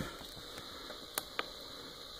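Two faint clicks about a fifth of a second apart, a little over a second in: push buttons on a rear-view camera monitor being pressed to move through its menu, against quiet room tone.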